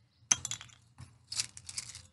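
Foam packing peanuts rustling and clattering as handfuls are lifted and dropped, in a few short crisp bursts.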